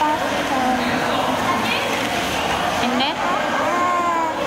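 Short, high-pitched vocal sounds from a young child, heard over a steady murmur of background noise.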